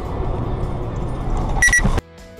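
Car driving on a highway, heard from inside the cabin on a dash cam: steady road and engine noise. A short high beep sounds near the end.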